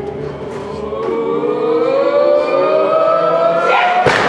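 Wrestling crowd voices holding one long note that slowly rises in pitch, building while a wrestler is held upside down in a stalling vertical suplex. A thud of bodies hitting the ring canvas comes right at the end.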